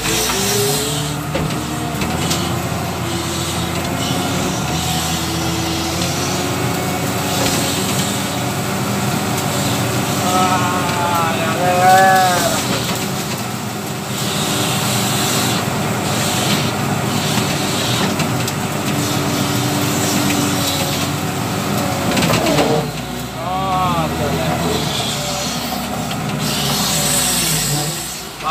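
Diesel engine of a W130 wheel loader running steadily under working load, heard from the operator's cab, its pitch shifting as the bucket pushes brush and soil. Twice, about a third of the way in and again near the end, a brief rising-and-falling pitched sound rises over the engine.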